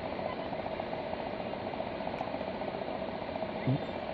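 Steady background hum with a thin constant whine running through it, with a brief low sound near the end.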